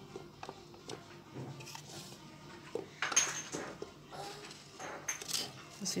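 Quiet handling sounds of unbaked cinnamon rolls being lifted and set down on an aluminium baking tray: small taps, with two short scraping rustles about three and five seconds in.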